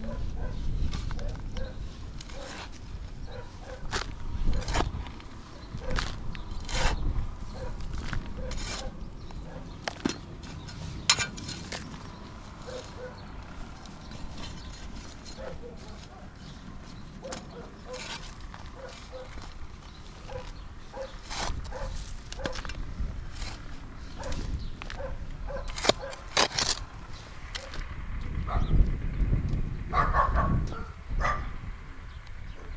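Short-handled metal spade digging and scraping loose garden soil, with scattered sharp clicks and scrapes of the blade at irregular intervals.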